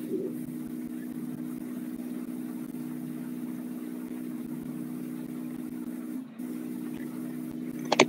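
A steady, low mechanical hum holding a few even tones, which drops out briefly a little past six seconds in.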